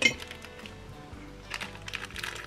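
A light metallic clink as a pair of scissors is picked up, followed by a few small handling clicks, over quiet background music.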